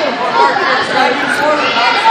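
Several people talking at once: overlapping, indistinct voices of spectators in a large gym.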